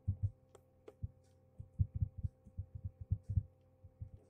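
A dozen or so soft, irregular low thumps, typical of the recording phone and its microphone being handled, over a faint steady hum.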